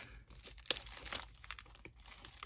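Clear plastic wrapping on a pack of note cards crinkling as it is handled and pulled open, with a few faint, sharp crackles.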